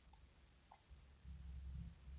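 Two faint, sharp clicks about half a second apart, typical of a computer mouse being clicked to move to the next picture, followed by a faint low rumble in the second half.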